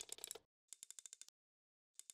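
Near silence, broken by faint runs of quick, evenly spaced clicks, about ten a second: a logo sound effect.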